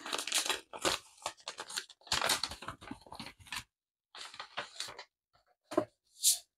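A sealed paper packet being torn open, then its paper envelopes rustling and crackling as they are pulled out, in short bunches of crackles: in the first second, from about two to three and a half seconds in, and again around four to five seconds in.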